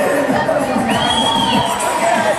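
A crowd of voices cheering and shouting over music, with many people calling out at once. About a second in, one high call rises and then falls away.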